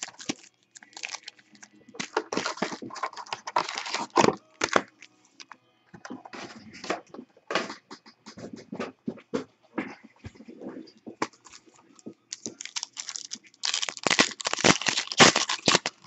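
Foil trading-card pack wrappers (2015 Panini Elite Extra Edition baseball) crinkling and rustling in irregular bursts as a handful of packs is handled and stacked. The crinkling grows louder and denser near the end as a pack is being opened.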